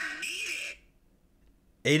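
Talk over background music that cuts off under a second in, followed by about a second of near silence; a man's voice begins near the end.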